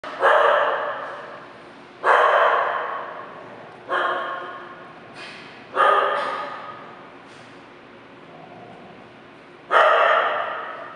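A dog barking: five single loud barks, the first four about two seconds apart and the last after a longer pause near the end. Each bark rings on briefly off the hard tiled walls.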